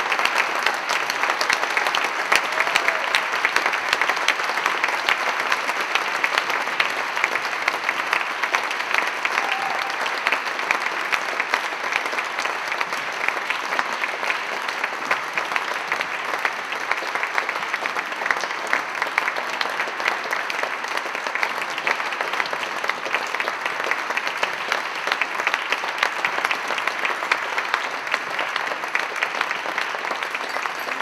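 Audience applause: many hands clapping in a dense, continuous patter that eases off a little after about halfway.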